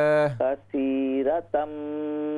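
Quran recitation in tajweed style. A man's voice holds a long note and breaks off just after the start. Then a higher, narrower-sounding voice, as over a telephone line, recites with long, drawn-out held vowels.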